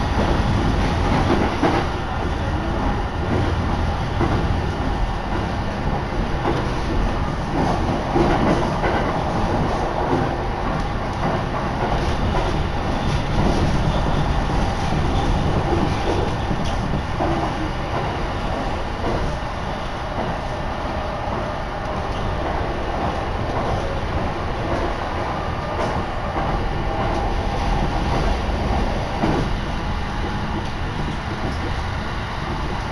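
A Shin'etsu Line passenger train running at speed, heard from inside the passenger car: a steady rumble of wheels and running gear.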